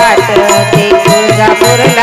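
Instrumental passage of a Marathi devotional song (devi geet): a hand drum plays a steady repeating beat under a held melodic note, with hand-clapping and small hand percussion keeping time.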